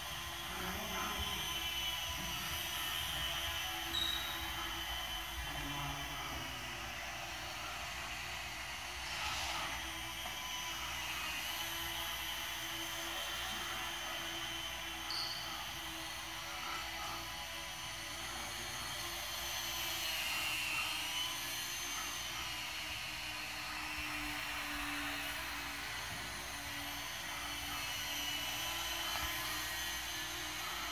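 Small electric RC plane motors and propellers buzzing, several at once, their high whine shifting up and down in pitch with the throttle.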